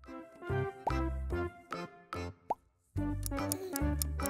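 Playful children's quiz background music with short rising blip sound effects; it breaks off briefly a little before three seconds in, then starts again.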